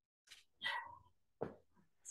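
Three short, faint vocal sounds, the middle and longest one falling in pitch.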